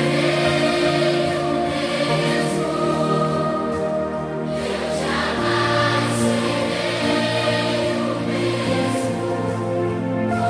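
Children's choir singing a Christian worship song in long held notes over instrumental accompaniment, the chord changing about five seconds in.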